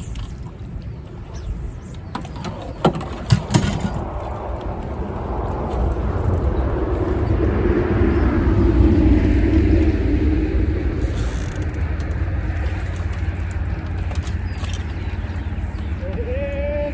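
A road vehicle passing on a nearby highway, its sound swelling to a peak a little past halfway and then easing off, over a steady low rumble. A few sharp clicks come about three seconds in.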